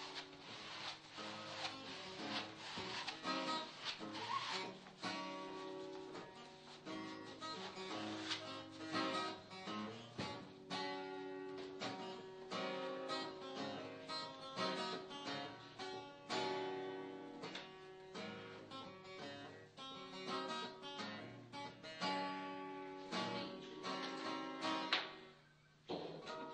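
Background music: acoustic guitar, plucked and strummed, with a run of quick notes.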